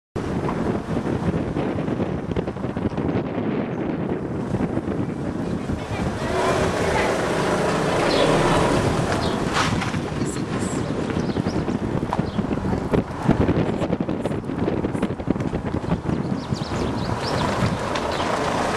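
Wind noise on a handheld camera's microphone, a dense rush of noise outdoors.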